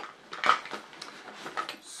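Toiletry bottles and an aerosol can knocking and clinking together as they are rummaged through in a bag: a few light knocks, the loudest about half a second in.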